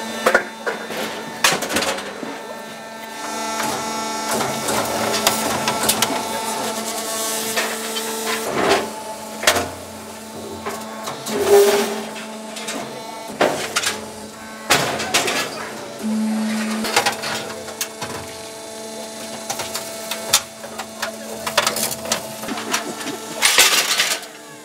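Ron Arad's 'Sticks and Stones' chair-crushing machine running: a steady motor hum under irregular loud cracks and bangs as a chair is crushed and pushed out into its mesh chute. Crowd voices are faintly heard behind.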